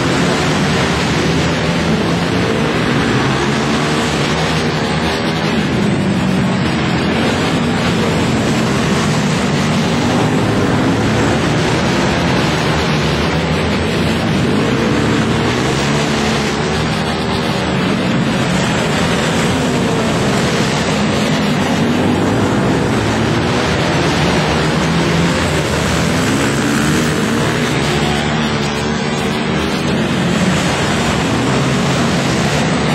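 Several dirt-track racing motorcycle engines running together, their pitch rising and falling over and over.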